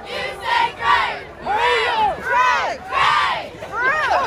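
A squad of cheerleaders shouting a chant in unison: a string of about five drawn-out calls that rise and fall in pitch.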